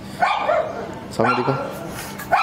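Gaddi puppies barking in short, high-pitched bursts, two of them about a second apart.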